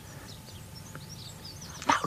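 A quiet lull in the soundtrack: a steady low hum with a few faint, scattered high bird chirps. A voice begins at the very end.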